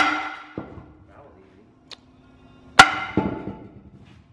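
Sledgehammer blows on the rusty steel brake drum of a five-ton Rockwell axle, knocking the drum off its hub. There are two heavy clangs about three seconds apart, each leaving a metallic ring, with a lighter knock between them.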